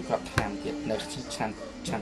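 A man talking over background music, with one sharp knock about half a second in.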